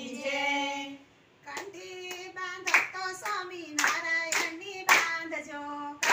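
A group of women singing a Gujarati devotional kirtan in unison, with hand claps. A held sung note ends about a second in, followed by a brief pause. The singing then resumes with the group clapping in time, about twice a second.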